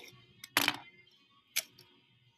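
A few light clicks and taps of thin wood veneer pieces being handled and set down, the loudest about half a second in and another about a second and a half in.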